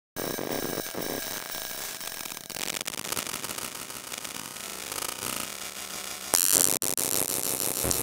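Experimental noise-based electronic music: dense static, crackle and hum textures with thin steady high tones. It jumps louder a little past six seconds in, with a brief cut-out just after.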